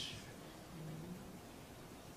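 A quiet pause in speech: low room tone, with a faint short hum of a voice a little under a second in.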